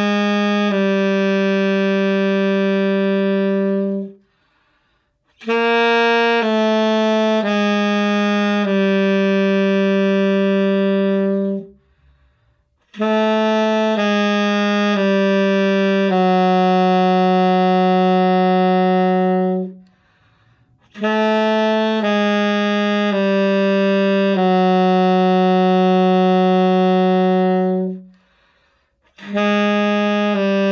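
Alto saxophone playing a slurred low-register exercise: four phrases, each a few notes stepping down into a long held low note, with a short pause for breath between phrases.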